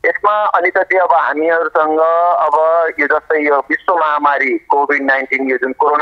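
Speech only: a voice talking steadily over a telephone line, with the narrow, thin sound of a phone call.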